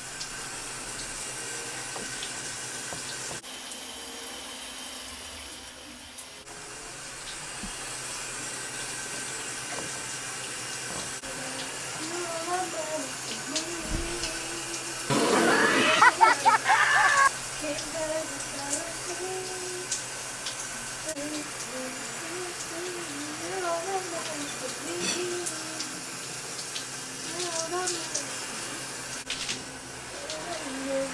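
A shower running steadily behind the curtain, with a woman singing over the water from about twelve seconds in. About halfway through there is a brief loud burst of close handling noise, the loudest sound here.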